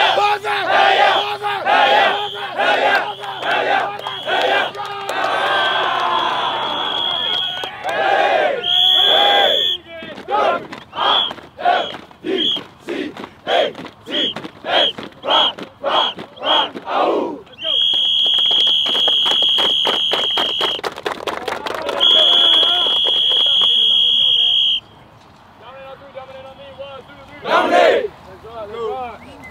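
A football team chanting and yelling in unison, rhythmic group shouts of about one or two a second. In the second half come two long, steady, high-pitched whistle blasts, about three seconds each, over fast rhythmic clapping.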